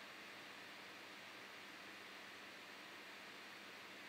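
Near silence: room tone with a faint, steady hiss.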